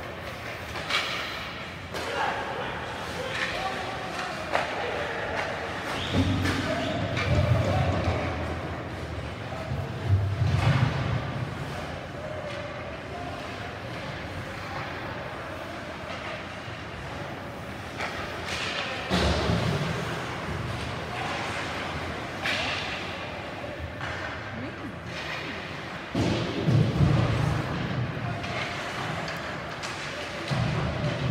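Ice hockey game in play in an indoor rink: repeated heavy thuds of the puck and players against the boards and glass, with sharp knocks in between and voices of players and spectators.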